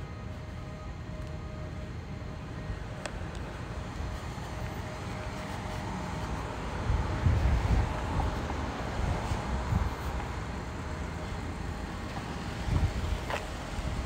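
Outdoor vehicle traffic noise with a low rumble, swelling for a few seconds in the middle.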